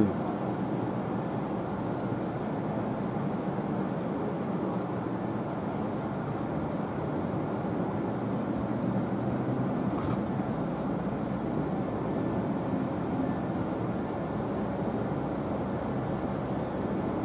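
Steady low background hum of a large indoor hall, with one faint tap about ten seconds in.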